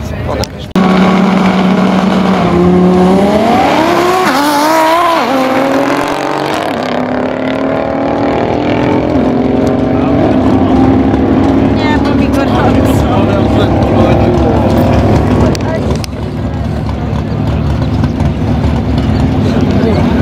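Twin-turbo Audi R8 5.2 V10 drag car launching and running down the quarter mile. The engine comes in loud about a second in and holds one pitch, then climbs for a few seconds. Its note then drops and runs on steadily as the car pulls away.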